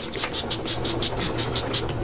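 A pump spray bottle misting a face: about a dozen quick spritzes in rapid succession, roughly six a second, stopping just before the end, over a steady low hum.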